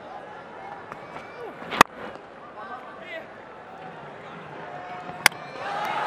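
Two sharp cricket-ball cracks over a low stadium crowd murmur: the bat striking the ball about two seconds in, then the thrown ball hitting the stumps in a direct-hit run-out attempt a few seconds later.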